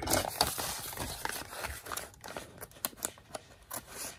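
Small scissors snipping through a paper envelope in a run of short, irregular cuts, mixed with the rustle of the paper being handled.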